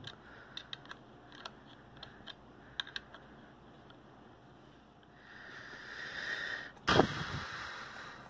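Light, irregular clicks from a Rockit 99 delid tool as its screw is turned against a 7700K's heat spreader. Near the end comes a rising rustle and then one sharp thump, the loudest sound.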